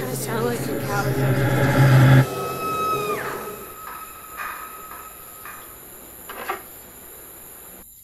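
Cinematic tension sound effect: a riser builds in loudness over a deep drone and cuts off abruptly about two seconds in. A high tone then slides down in pitch, a few sharp clicks follow, and the sound fades away.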